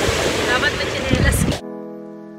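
Surf breaking on a pebble beach and wind on the microphone, with a voice faintly in it, cut off suddenly about one and a half seconds in by slow, sustained music.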